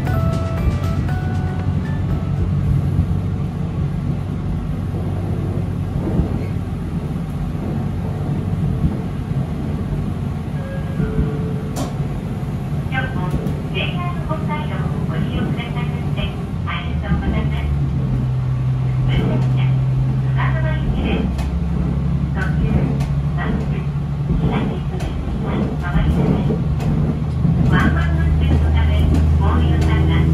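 Diesel railcar's engine running under the floor, a steady low drone that grows louder about halfway through as the railcar pulls away and picks up speed.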